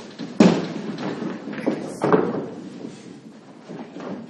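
A few sharp knocks and thumps, the loudest about half a second in and two more around two seconds in, over a noisy background.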